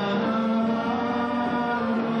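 A man singing a long held note into a handheld microphone over amplified backing music.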